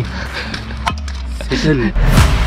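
A man laughs briefly over quiet background music that has a steady low bass. There are a couple of sharp clicks about a second in.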